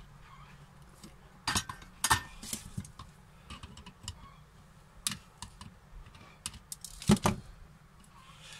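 Flush cutters snipping the wire leads of components off a circuit board: a string of sharp clicks, the loudest near the end, among lighter ticks from handling the board and tools.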